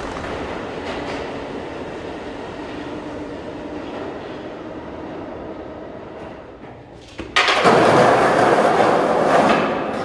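A subway train running past, a steady rumble that slowly fades. About seven seconds in, a sudden loud rushing noise takes over.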